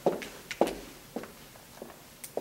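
Footsteps: about four short, evenly spaced steps roughly half a second apart.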